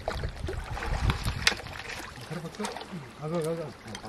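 Water sloshing and splashing with scattered knocks as a hooked fish is played on a rod in shallow water. A little past halfway a voice calls out in a drawn-out, wavering cry.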